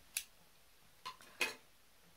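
Scissors snipping wool yarn ends short: two sharp snips about a second apart, with a fainter click just before the second.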